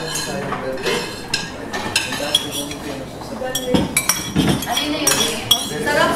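A metal spoon and ceramic plates and bowl clinking and scraping as food is dished out and plates are set down on a table, in many short, irregular clinks.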